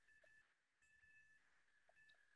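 Near silence.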